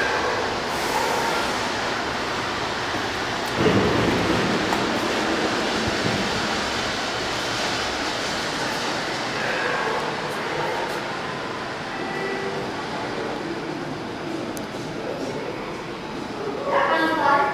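Steady running noise of something travelling on rails, with a single thump about three and a half seconds in.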